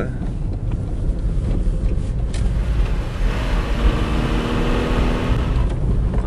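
Steady low rumble of a car's engine and road noise heard inside the cabin. From a little before halfway, a hiss with a faint steady whine joins it for about three seconds and then stops: the windscreen washer spraying fluid onto the glass.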